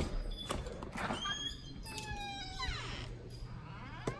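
A front door being unlatched and opened, with a couple of sharp clicks, followed by a run of high squeaks and chirps that glide and fall in pitch.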